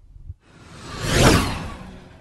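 Whoosh sound effect for a logo animation: a noisy swish that swells to a peak a little past a second in and then fades away.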